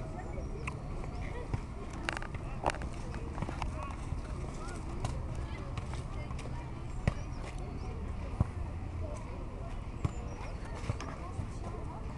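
Ambience of a youth football match: distant children's voices and shouts from the pitch, with a few sharp knocks of the ball being kicked at irregular moments, over a steady low rumble.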